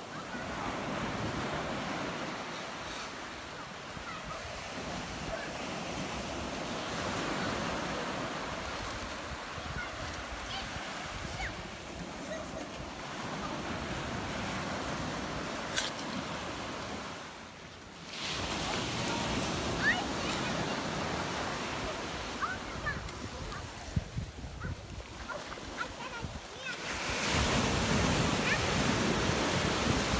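Surf breaking and washing up a sandy beach: a continuous rushing of small waves, which dips briefly about two-thirds through and swells louder near the end, with a few short sharp knocks over it.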